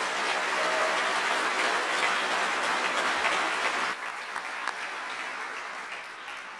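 Auditorium audience applauding after a choir song, strongest for the first four seconds, then dropping off and dying away.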